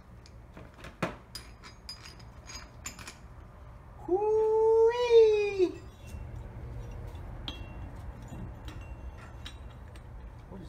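A cat meowing once, a long call about four seconds in that rises a little in pitch and then falls away. Before it, light metal clinks of tool parts being handled.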